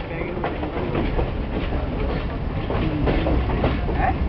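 A passenger train running, heard from inside a carriage: steady rumble with wheels clacking over the rail joints.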